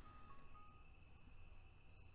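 Near silence: a faint steady high whine with a few soft held notes of background music.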